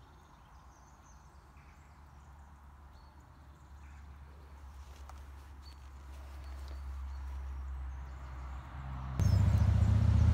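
Road traffic rumble from a busy road, swelling over several seconds as a vehicle passes, with faint bird chirps over it. About nine seconds in, a much louder low rumble starts suddenly.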